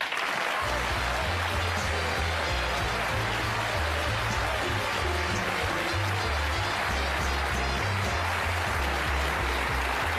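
Studio audience applauding steadily while a band plays walk-on music, a bass line stepping from note to note underneath from about half a second in.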